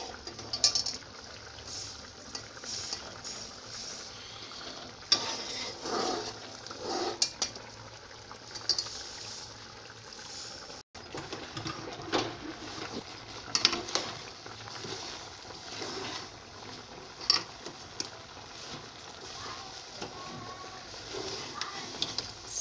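Steel spoon scraping and knocking against the inside of a steel pot in irregular strokes while stirring roasted sesame seeds into thick jaggery syrup.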